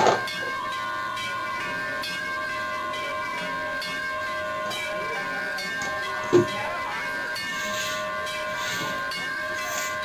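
A steady drone of several held tones over a hiss, with a brief loud knock right at the start and another about six seconds in.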